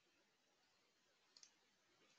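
Near silence: faint recording hiss, with one tiny click about one and a half seconds in.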